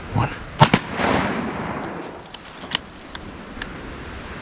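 Two shotgun blasts fired almost together, about half a second in, to flush a large group of ducks off a pond. A rushing wash of sound follows and fades over about a second and a half.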